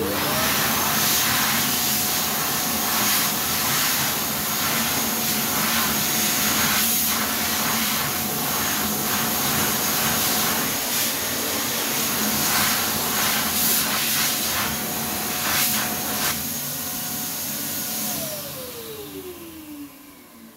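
PHS Airstream Vitesse hand dryer starting with a quick rising whine and running loudly, its motor tone steady over a rush of air. Near the end it cuts out and winds down with a falling whine.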